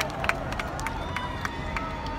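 Crowd applause and cheering dying down to a few scattered claps and crowd voices.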